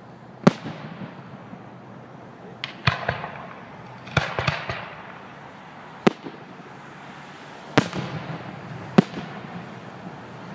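Fireworks display: aerial shells bursting with sharp bangs, a few single ones spaced a second or more apart and two quick clusters of bursts around three and four and a half seconds in.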